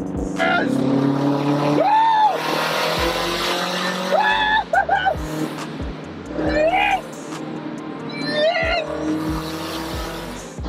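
A turbocharged Scion FR-S's flat-four engine with a Tomei exhaust, revved about five times in quick sweeps, each rev rising and falling in pitch. Later in the clip the revs sound inside a road tunnel; the exhaust is called "screaming".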